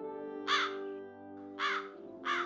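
A bird calling twice, about a second apart, over held notes of background music.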